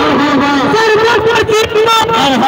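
A voice singing long, wavering held notes in a melodic line, loud and continuous, with a brief dip in loudness a little past the middle.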